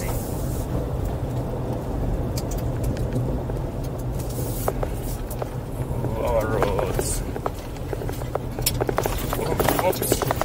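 Cabin road noise of a 2023 VW Amarok pickup driving on a bumpy gravel road in four-wheel drive: a steady low rumble of tyres and engine, with scattered sharp clicks through it.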